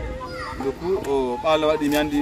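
People talking: conversation in speaking voices.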